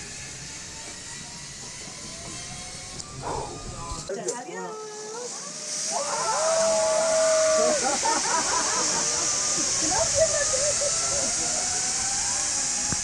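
Zip line trolley running down the steel cable, a steady high hiss that sets in about halfway through as riders are launched. Voices call out over it.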